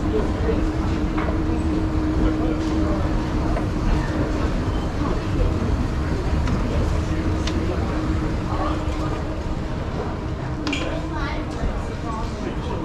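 A moving escalator's steady low rumble and hum, with the murmur of shoppers' voices over it; the hum fades near the end after stepping off.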